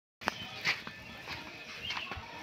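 Faint, short animal calls with small clicks over quiet outdoor background noise, after a brief break in the sound at the very start.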